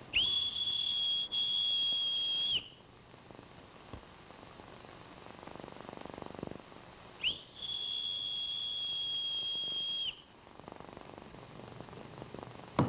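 Two long, steady, high-pitched whistle blasts, each lasting about two and a half seconds, with a pause of several seconds between them. It is a whistled summons, calling a man the way a dog is called.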